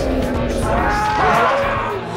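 A long, low monster roar sound effect over dramatic theme music.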